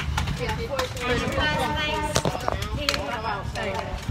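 Indistinct voices of several people talking in the background, none clearly in front.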